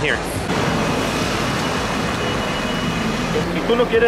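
Steady street traffic noise, an even rush of passing vehicles, with people's voices coming in near the end.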